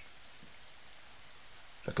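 A faint, steady hiss with no distinct events; a man's voice begins right at the end.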